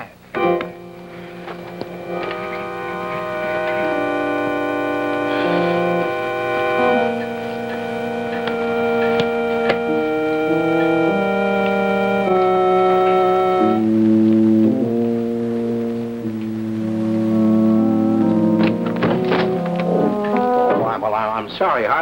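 Organ bridge music marking a scene change: slow, sustained chords that shift every second or two, moving into deeper bass chords in the second half and fading out near the end as talk resumes.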